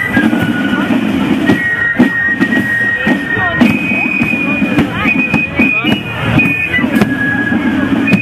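Marching fife-and-drum band playing: a group of fifes carries a high held melody, with regular strokes from a Sonor bass drum and drums. Crowd voices are mixed in underneath.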